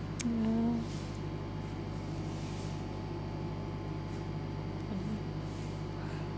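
Steady low electrical hum of a quiet room, with a woman's short hummed "mm" about half a second in and a fainter one around five seconds in.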